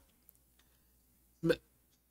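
Near silence broken by one short vocal sound from a man about one and a half seconds in, a brief hesitation noise in a pause between words.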